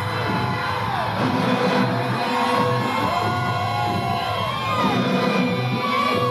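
Groove metal band playing live: distorted electric guitars with sustained notes bending up and down over bass and drums, with the crowd faintly audible underneath.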